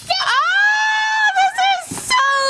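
A young child's high-pitched squeal: it rises, holds for about a second, then breaks into a few shorter wavering notes.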